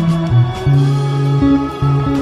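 Electric bass guitar played with the fingers: long, held low notes that change a few times, over a backing track with higher guitar and other instrument parts.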